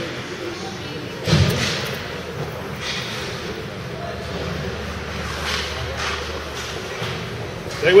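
Ice hockey play in an echoing indoor rink: one loud thump a little over a second in, then a few fainter sharp knocks, over steady arena noise. A spectator starts shouting near the end.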